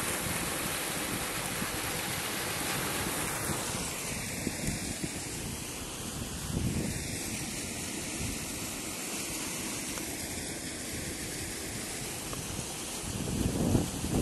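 Spring floodwater rushing over a small waterfall: a steady rushing noise, with wind on the microphone and a louder swell near the end.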